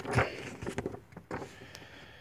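Paper catalog pages rustling as they are turned: a few short, crisp rustles in the first second and a half, then fading to quiet handling noise.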